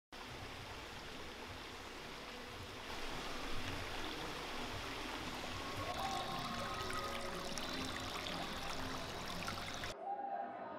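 Rushing water of a woodland waterfall, a steady hiss that grows louder about three seconds in.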